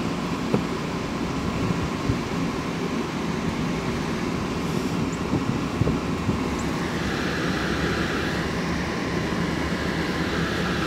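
Vehicle driving slowly in low gear through deep snow, heard from inside the cabin: a steady engine and tyre rumble with a few light knocks. A steady higher hiss joins about seven seconds in.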